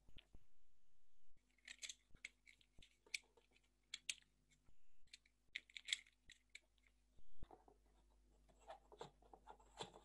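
Faint, scattered clicks, scrapes and rustles of hands handling cardboard parts, fitting a cardboard gear onto a pencil axle of a model car.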